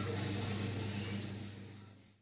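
Steady low hum with an even hiss, like background machine or electrical noise, fading out near the end.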